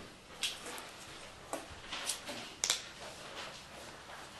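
A few brief, soft rustles and clicks of paper being handled, as Bible pages or script sheets are turned while a passage is looked up.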